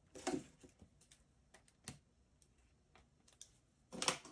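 Faint, scattered clicks and light taps, spaced irregularly about half a second to a second apart: scissors and a plastic shrink-wrap seal being handled as a sealed card deck is cut open.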